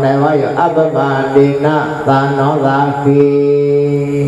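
A male voice chanting a Buddhist dhamma recitation in a sing-song monotone on a nearly level pitch, holding one long note near the end.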